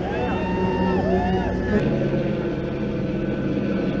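A helicopter circling overhead at a distance: a steady low engine and rotor drone under crowd voices.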